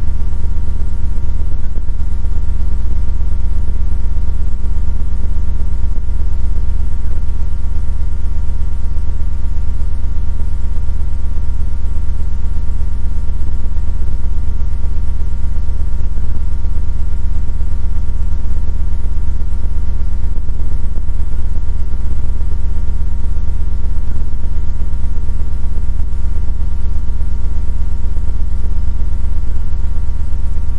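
A loud, steady electrical hum with a few fixed higher tones over it, unchanging throughout and with no voices: the program sound has dropped out and hum or buzz has taken its place, an audio fault in the broadcast feed.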